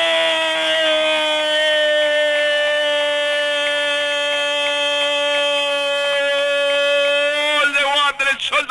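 A radio football commentator's long, held goal cry, "¡Gooool!", sustained as one unbroken note for about eight seconds. It sinks slightly in pitch and breaks off near the end.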